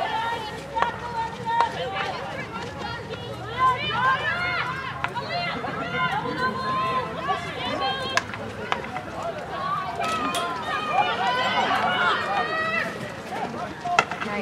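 Players' high-pitched voices shouting and calling to each other across a field hockey pitch, too distant for words to be made out. A few sharp clicks of hockey sticks striking the ball, plainest about four and eight seconds in.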